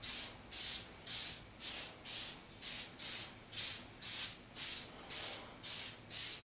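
Aerosol can of Bulldog adhesion promoter sprayed onto a sanded plastic bumper cover in short repeated hisses, about two a second.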